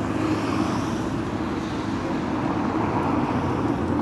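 Canal boat's engine running steadily, a low even hum with a continuous haze of noise over it.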